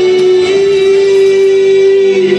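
A woman's singing voice holding one long, steady note over a backing track, the held final note of her song.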